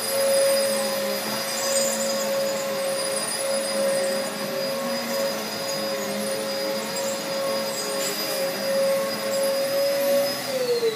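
An electric motor running with a steady, unchanging whine.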